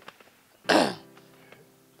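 A man gives one short, loud, breathy vocal burst, like a cough, about three-quarters of a second in, over faint background music.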